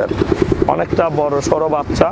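A small engine running close by with a rapid low pulsing, under a person talking.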